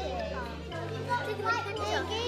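Many young children's voices chattering and calling out at once, over background music with a low bass line that steps to a new note about once a second.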